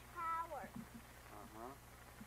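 A young child's high voice making two drawn-out wordless calls: the first held and then dropping in pitch, the second rising.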